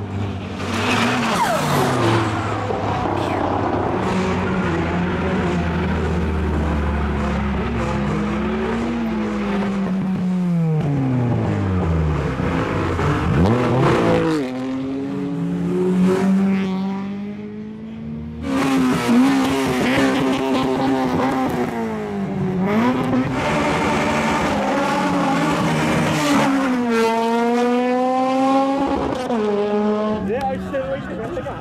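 Modified cars revving hard and spinning their tyres in burnouts and launches, one after another, with tyre squeal. The engine notes repeatedly climb and drop as the cars rev, and a sharp climbing rev comes near the end.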